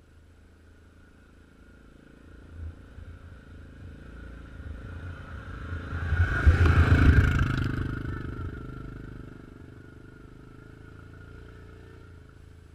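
A motor vehicle passing by, heard from ground level: it grows louder over several seconds, peaks about seven seconds in, then fades away.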